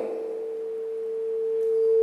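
Sound-system feedback: a steady single-pitched ringing tone that slowly grows louder.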